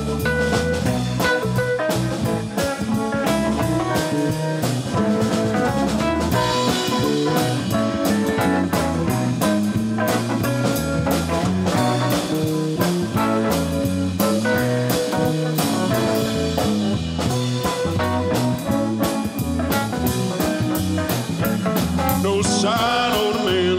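Live band playing an instrumental blues-rock groove in B major: electric guitar, electric bass, drum kit and electric keyboard, with steady drum hits under a moving bass line.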